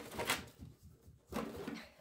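Quiet rustling and handling noises as a small bath bubble bar is picked up and handled, with a soft, low voice-like sound about a second and a half in.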